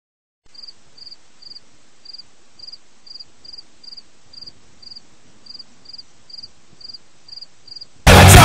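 A cricket chirping steadily, about two short pulsed chirps a second, over a faint hiss.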